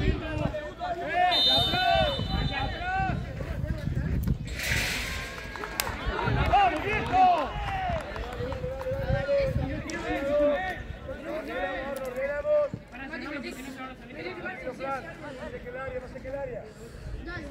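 Players and onlookers shouting across a football pitch in high, raised voices during play, with a short rush of noise about five seconds in.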